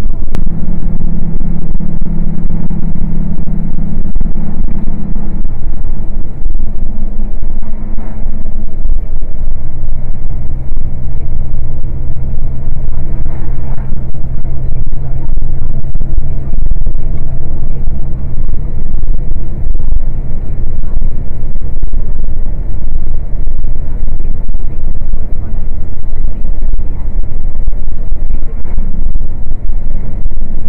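Truck engine and road noise heard from inside the cab, a loud steady drone whose pitch drops about nine seconds in, as engine speed falls.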